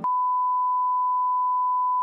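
Broadcast test tone: a steady, unbroken pure beep at one pitch, the 1 kHz reference tone that accompanies colour bars.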